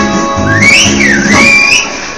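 Live dance band sounding the final chord of a song, with a long gliding whistle from the crowd over it that rises, dips and levels off. The music drops away near the end.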